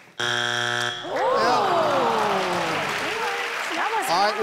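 Family Feud strike buzzer sounding once, a harsh low buzz just under a second long, marking a wrong answer. Then the studio audience groans, many voices sliding down together.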